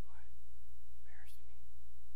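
Faint whispered, breathy speech sounds twice, near the start and about a second in, over a steady low hum.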